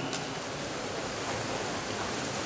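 Steady wash of noise in an indoor swimming hall during a backstroke race, with the swimmers splashing through the water.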